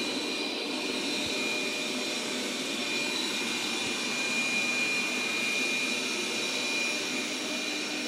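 Eufy RoboVac L70 Hybrid robot vacuum running and cleaning: a steady whirring hiss from its suction fan with a constant high whine over it. It is running normally after its drop-sensor connector was cleaned of corrosion.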